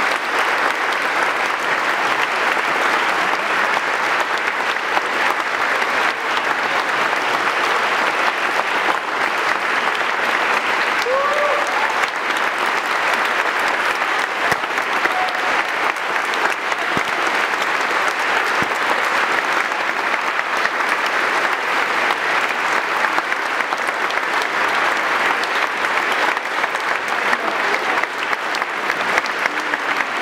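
Audience applauding steadily, a sustained ovation, with a brief cheer rising above it about eleven seconds in.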